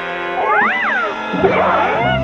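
Cartoon characters screaming in fright over held chords of music: a cry that rises and falls in pitch, then a jumble of overlapping screams near the end.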